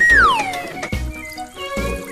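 A cartoon whistle sound effect gliding steadily down in pitch for under a second, over background music with a pulsing bass.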